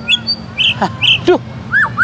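White-rumped shama (murai batu) singing: short, high chirps, then near the end a quick run of rapid notes.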